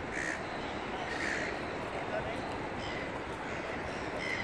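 Gulls calling in short squawks about a second apart, over the steady rush of water running down the stepped rings of a large fountain.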